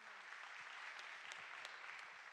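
Congregation applauding, a quiet, steady patter of many hands clapping.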